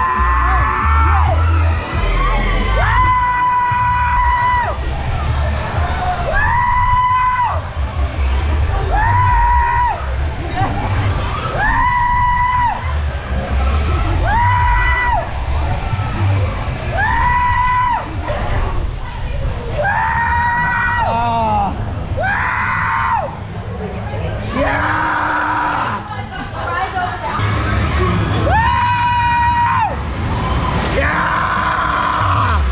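Carnival ride riders yelling a long held 'whoo' again and again, about every two and a half seconds as the ride swings round. Loud ride music plays under the yells, with a steady low rumble.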